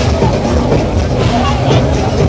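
Loud fairground din: amplified ride music with a heavy bass, over the voices of the crowd.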